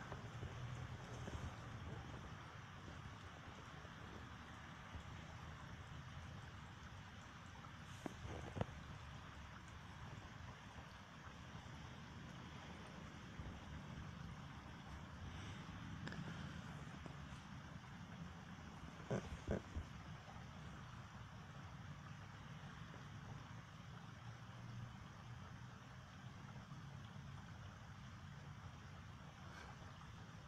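Heavy rain falling steadily, a soft even hiss, with a few brief knocks about eight and nineteen seconds in.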